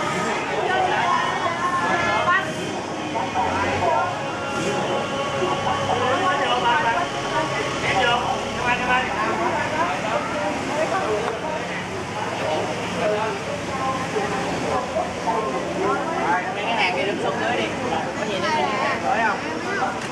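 Many children's voices chattering at once, overlapping into a steady babble with no single speaker standing out.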